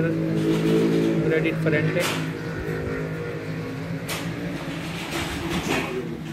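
A steady low drone like a motor running, loudest in the first two seconds and then fading, with two sharp clicks about two and four seconds in.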